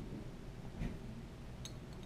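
Quiet handling of one-ounce silver rounds in the hand, with a couple of faint, short clicks as the coins touch, over low room tone.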